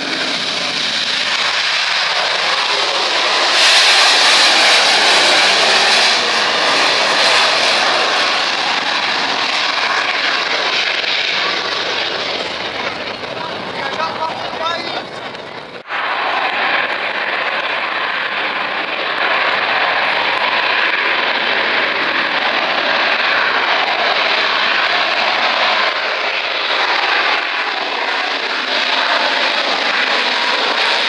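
AV-8B Harrier II jump jets' Rolls-Royce Pegasus vectored-thrust turbofans running loud as the jets take off and fly past, loudest a few seconds in. About halfway through the sound breaks off abruptly, then carries on steadily.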